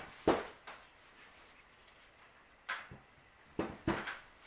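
A few short knocks and handling noises as hands move the square pot of a flower arrangement on the table: one knock about a quarter-second in and two more near the end, with quiet room tone between.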